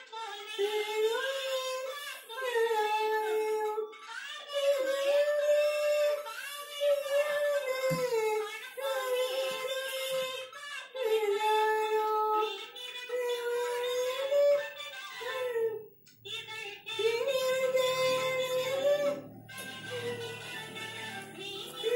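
A woman singing solo, one melodic voice in long held and gliding notes, phrase after phrase with short breaths between and a brief pause near the end.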